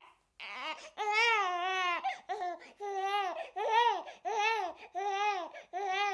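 A baby crying in a string of short wails, a little more than one a second, each rising and falling in pitch. The crying stands in for the doll waking up hungry.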